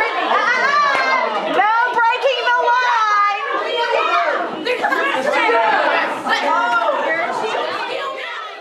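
A crowd of young people shouting and cheering over one another in a loud, continuous hubbub of overlapping voices, urging on players in a party game.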